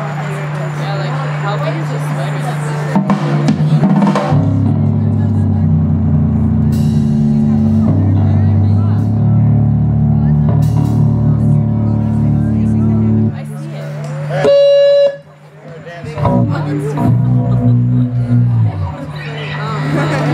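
A live electric bass guitar and drum kit playing loud, sustained low bass notes through an amplifier with a steady amp hum underneath. The music starts about four seconds in and breaks off briefly near fifteen seconds before resuming.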